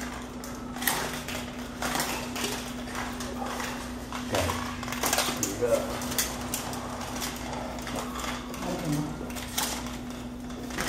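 Vertical window blinds being pushed aside and handled, their slats clattering in an irregular run of clicks and rattles over a steady low hum.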